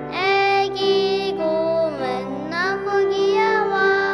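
A child singing a melody over steady instrumental accompaniment.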